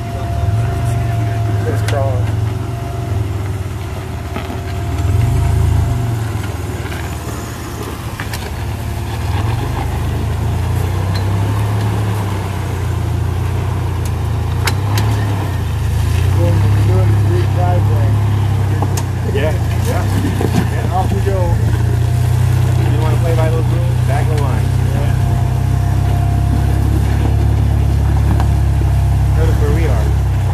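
Lifted pickup truck's engine running at low revs as it crawls over boulders, with the throttle rising and falling: it swells about five seconds in and again from about the middle onward. Occasional sharp knocks are heard as the truck works over the rock.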